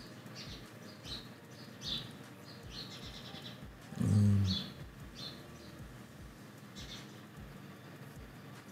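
Birds chirping in the background, short high chirps coming every second or so. A brief, louder voice-like sound comes about four seconds in.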